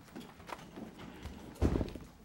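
Scattered knocks and rustles of someone moving and handling things at a desk near a microphone, with one louder, dull thump about one and a half seconds in.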